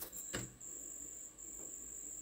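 A faint, steady high-pitched tone broken by a few short gaps, with a single sharp click about a third of a second in.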